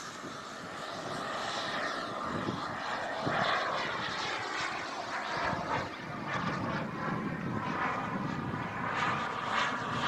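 The iJet Black Mamba 140 miniature turbine of a large radio-controlled jet, whining and rushing as the model flies past at a distance. Its pitch slides as the jet moves across the sky.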